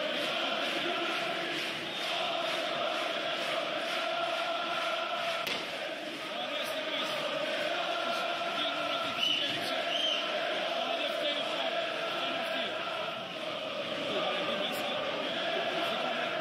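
A packed stadium crowd of football ultras singing a chant together, a steady held melody of thousands of voices.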